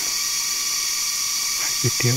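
Forest insects buzzing in a steady, high-pitched drone, with a man's voice starting again near the end.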